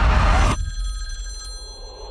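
A loud, dense crowd din cuts off abruptly about half a second in. An old telephone bell rings once and its ring fades away.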